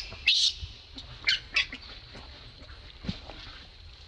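Newborn baby macaque screaming in distress while an adult monkey pins it to the ground: short, high-pitched squeals, three loud ones in the first second and a half, then fainter cries.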